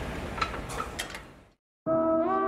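A pec deck machine in use: a few light clicks from its handles and weight stack over gym room noise, fading out to silence about one and a half seconds in. Sustained music notes start just at the end.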